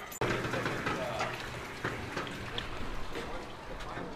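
Footsteps and a dog's paws tapping on an aluminium marina gangway: a run of light, irregular taps over outdoor ambience.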